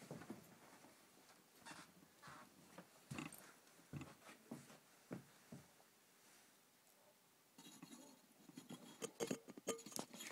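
Faint, scattered knocks and rustles of someone moving about a quiet room, with denser clicking and handling noise from the camera being picked up near the end. No banjo is played.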